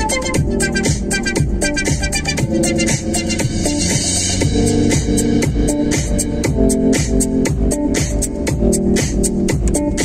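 Electronic background music with a steady, fast beat and repeating melodic notes.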